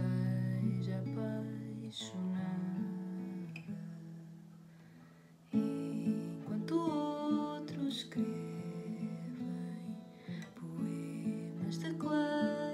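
Solo acoustic guitar playing chords. The sound rings and fades away over the first five seconds, then a sudden strum about five and a half seconds in starts the next passage.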